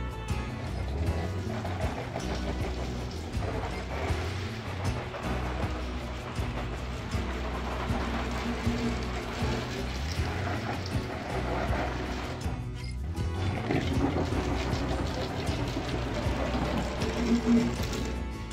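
Background music over water spattering and running on the outside of a campervan's side window, heard from inside during a water test for leaks.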